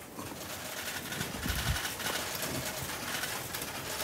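Rapid, overlapping clicking of many press camera shutters, with a brief low thump about one and a half seconds in.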